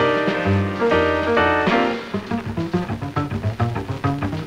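A jazz trio of acoustic piano, double bass and drum kit playing a swing-style number. About halfway through, the loud held chords give way to quieter, quicker notes.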